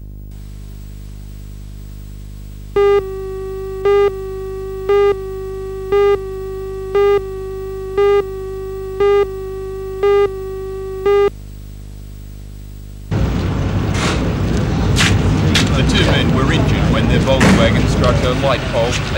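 Videotape countdown leader: a steady beep tone with a louder pip once a second, nine pips in all, over a low electrical hum. About thirteen seconds in, noisy location sound with sharp clicks and knocks cuts in abruptly.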